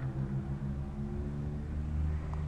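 Engine idling steadily, a low even hum. After its new valve spring it runs without the misfire.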